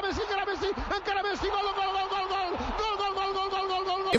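Spanish-language football commentator shouting excitedly, then holding a long drawn-out cry at one steady pitch, broken once near the middle, the usual call for a goal.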